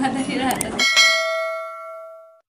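A bell-chime notification sound effect for a subscribe button: struck a little under a second in, it rings with several clear tones and fades away.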